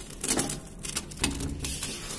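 Damp dirt-and-cement mix crunching and crumbling under hands, gritty against a metal basin. It makes a run of sharp crackles and scrapes, with four or five louder bursts spread through the two seconds.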